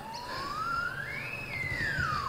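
A siren wailing: one slow rise in pitch over about a second and a half, a brief hold at the top, then a fall back down.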